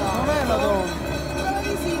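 Race announcer speaking over a public-address loudspeaker, with a steady low background din from the outdoor finish area.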